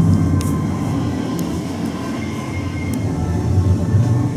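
A steady low rumble with faint sustained tones above it and a few light clicks.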